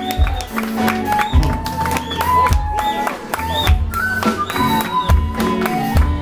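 Black Sea folk music played live by a band: a high melody line with sliding notes over a deep drum beat about every second and a quarter, with quicker percussion strokes between.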